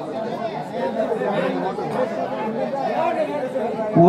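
Several men talking over one another in an indistinct babble of voices.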